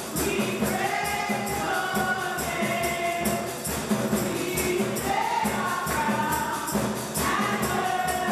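Gospel praise song: voices singing a melody together over a steady percussion beat.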